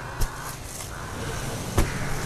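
Sacks being handled at a weighing table over a steady low background noise: a faint knock near the start and a sharper, louder knock near the end as a sack is set down.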